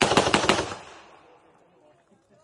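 Pistol fired in a fast string of about five shots within half a second, the reports echoing and dying away about a second in.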